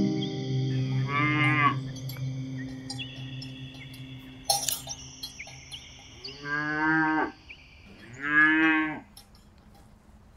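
Cow mooing three times: a short moo about a second in, then two longer moos near the end. Background music fades out underneath, and there is a sharp click in the middle.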